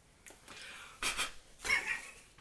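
Rubber-gloved hands handling and fitting the plastic attachment of a Powermat PM-OWF-170M multi-function sharpener: two short bursts of plastic rubbing and scraping, about a second in and near the end, the second with a squeak.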